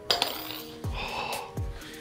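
A metal bottle cap flicked across a tabletop game board: a sharp click as it is struck, a short slide, and a light metallic clink about a second in.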